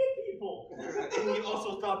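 Speech mixed with chuckling laughter.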